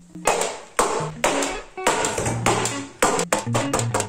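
Background music with a beat, over which a hand staple gun clacks several times, tacking wire mesh down inside a wooden form.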